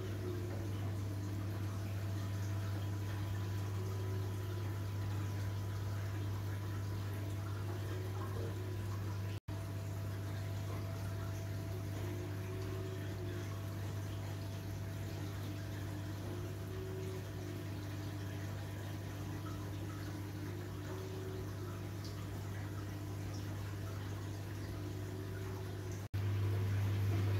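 Reef aquarium equipment running: a steady low hum from the pumps, with water trickling and flowing.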